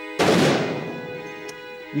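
A single shot from a Barrett .50-caliber rifle (.50 BMG): one sharp report just after the start that rings out and fades over about a second and a half.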